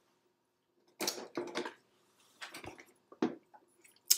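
Plastic model-kit sprues being handled, a few short rattles and clacks of hard plastic beginning about a second in.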